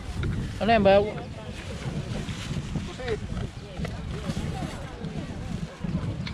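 Wind buffeting the microphone, a steady low rumble throughout. About half a second in there is one loud exclamation with a wavering pitch, and fainter voices talk through the rest.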